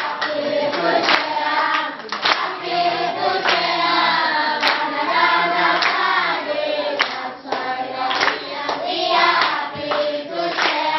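A group of children singing together as a choir, clapping their hands in a steady beat along with the song.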